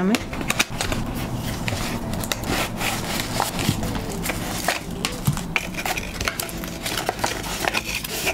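Cardboard product box being opened and emptied by hand: scraping of the cardboard flaps and rustling of plastic packaging, with many small irregular clicks and taps.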